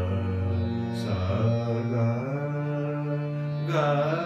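Male voice singing a slow alaap in raga Gaurimanjari over a steady drone, holding notes and gliding between them, with a new phrase beginning near the end.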